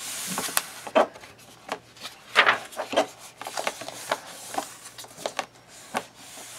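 Pages of a paperback coloring book being turned and smoothed flat by hand: a string of brief paper rustles and rubs, the loudest about two and a half seconds in.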